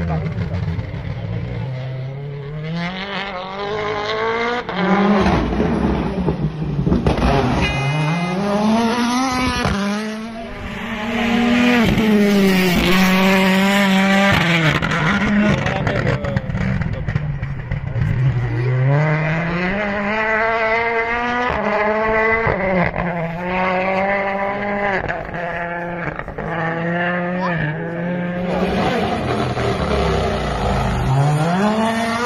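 Rally cars' engines revving hard as they pass on a tarmac special stage, the pitch climbing and dropping again and again with each gear change and lift.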